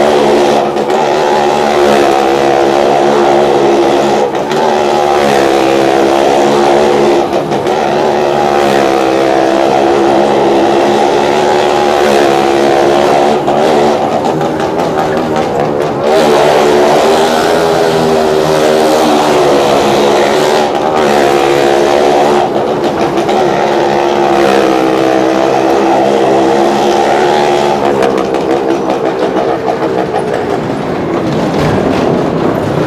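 Two small hatchback cars and a motorcycle riding round the vertical wooden wall of a well-of-death pit. Their engines rev hard without a break, the pitch rising and falling as they circle, and the sound is enclosed within the wooden cylinder.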